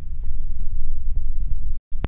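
A loud, steady low rumble with a few faint clicks. The sound drops out completely for a moment near the end.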